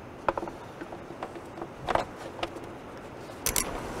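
A few light clicks and knocks of the stock plastic intake duct on a BMW 335i being pushed and seated into place in the engine bay.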